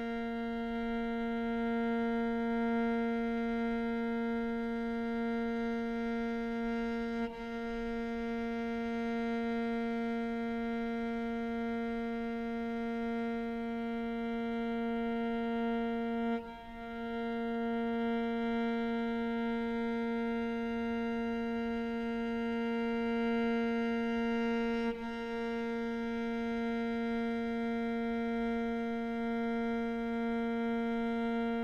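Solo cello holding one long bowed note at an unchanging pitch, with a brief break at each bow change, about every eight or nine seconds.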